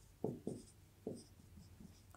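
Marker squeaking on a whiteboard in short writing strokes: three faint squeaks in the first second or so, each dropping in pitch, then a few weaker scratches.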